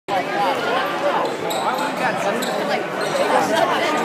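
Basketball game in a gymnasium: a ball being dribbled on the hardwood court among the voices of players and spectators echoing in the hall.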